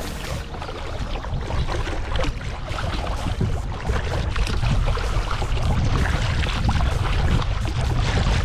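Water splashing and rushing along the hull at a moving kayak's bow, with a steady rumble of wind on the microphone; it grows louder over the first few seconds.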